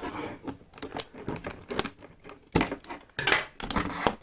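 Scissors snipping through a clear plastic blister pack: a series of sharp clicks and crackles, with the loudest snaps about two and a half seconds in and again just after three seconds, and the plastic crinkling as it is pulled apart.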